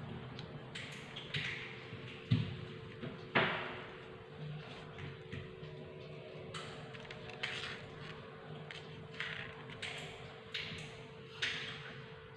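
Scattered small taps, clicks and paper rustles as quilling paper and tools are handled and set down on a tabletop, the sharpest knock about three and a half seconds in, over a steady low hum.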